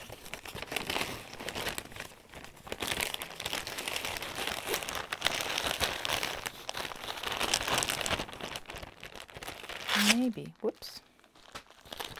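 Crinkly packaging rustling and crackling irregularly as a cross-stitch kit is handled and unpacked, with a short murmur near the end.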